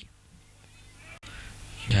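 Faint, steady background hiss of outdoor ambience between phrases of commentary, briefly dropping out about a second in, with a man's commentary voice starting again near the end.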